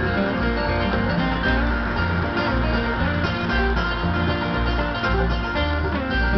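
Bluegrass band music playing on a radio, with a bass line stepping between notes about twice a second under picked strings, and a flatpicked Fender Malibu acoustic guitar played along with it.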